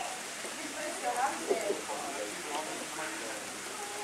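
Faint, indistinct voices of people nearby over a steady hiss, with no clear sound from the animals.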